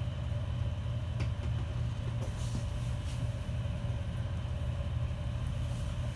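Steady low machinery hum, like an engine or ventilation droning, with a couple of faint clicks as the fish specimen is taken out of a plastic tray.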